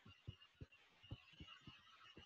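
Near silence with faint, soft low taps at irregular intervals, a stylus writing on a tablet, over a faint steady hiss.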